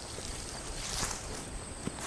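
A pulled-up potato plant's leaves and stems rustling as it is swung and tossed aside, a brief swish about a second in, over a steady high insect drone.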